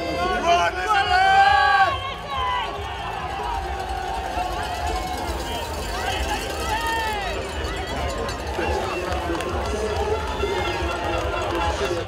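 Race-side crowd sound at a cyclocross course: spectators' voices calling and cheering as riders pass, loudest in the first two seconds, over a steady low rumble.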